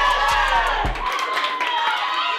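A team of women players shouting and cheering together in a small room, over background music whose bass beat cuts off about a second in.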